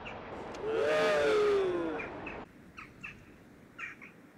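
Birds calling: a loud drawn-out call that rises and falls in pitch for under two seconds, then short high chirps repeating about every half second.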